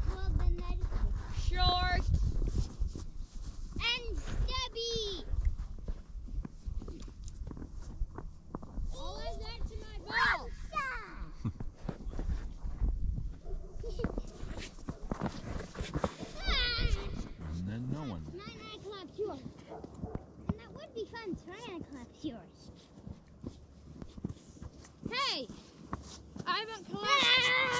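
Children's high-pitched shouts and squeals, coming every few seconds, over a low rumble that fades out about two-thirds of the way through.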